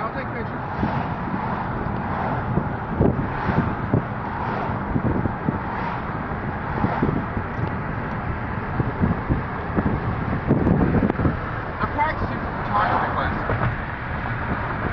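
Road and wind noise inside a moving car, with faint, indistinct voices now and then.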